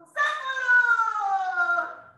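A woman's voice holding one long, high-pitched drawn-out call that slowly falls in pitch for almost two seconds, cat-like in tone.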